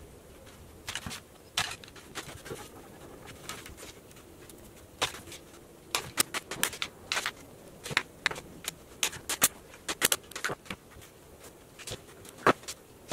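A cordless brad nailer firing brads into a cedar frame: a quick series of sharp snaps, mostly in the second half, after some quieter scraping and handling of wood.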